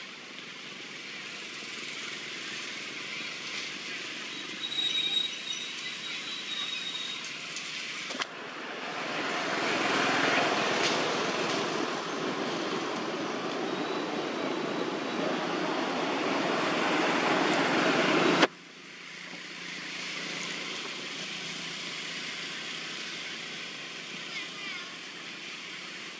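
Steady outdoor background noise that changes abruptly twice, about 8 seconds in and again about 18 seconds in, the middle stretch the loudest; a brief thin high tone sounds around 5 seconds in.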